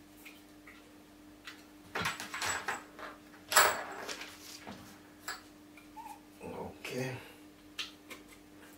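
Wooden flat-pack furniture parts being handled on the floor: scrapes and clatter of wood, loudest just after the halfway point, with some low muttering near the end over a faint steady hum.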